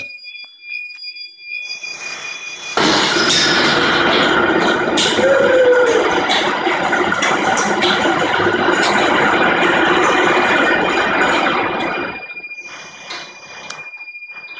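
Fire-rated rolling steel shutter doors dropping closed on release, their slats rattling and clattering loudly from about three seconds in until they hit the floor about twelve seconds in. A steady high-pitched alarm tone sounds under it.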